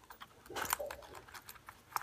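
Light clicks and rustling of an Epi leather wallet being handled and opened, with a sharper click a little under a second in and another at the end.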